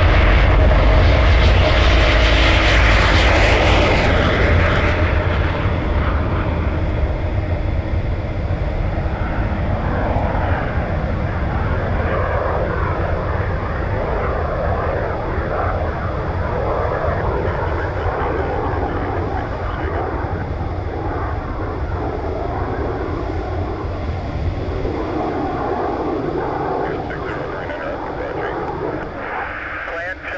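XCOR rocket engine of the Rocket Racer firing through takeoff and climb-out: a loud, steady, deep roar with hiss. The hiss drops away about five seconds in, and the roar fades gradually as the plane climbs away.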